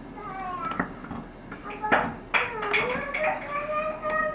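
A small child's high-pitched wordless vocalizing: short sliding tones, then one long held note from a little past halfway, with a few light knocks in between.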